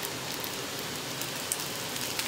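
Oil sizzling steadily under an adai (lentil-and-greens batter pancake) frying on a cast-iron tawa, with a few faint crackles.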